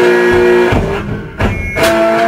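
Blues song: guitar with a man singing long held notes, and a sharp strummed chord near the end.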